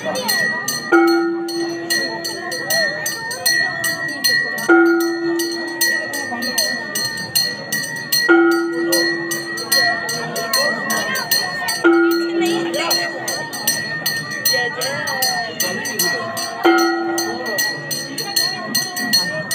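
Temple bells ringing for an aarti: a bell rung without pause gives a steady high tone, while a deeper bell or gong is struck about every four seconds, each stroke ringing on for a second or so. Voices sing or chant underneath.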